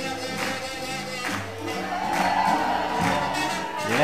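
Live swing jazz band playing with a steady beat, with one long held note through the second half.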